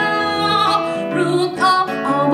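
A woman singing live into a microphone, holding long notes, over plucked acoustic guitar accompaniment.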